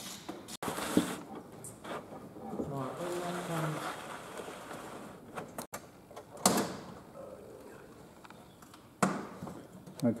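Low talk with a few short knocks from handling the RV-4's metal engine cowling. The loudest knock comes about six and a half seconds in.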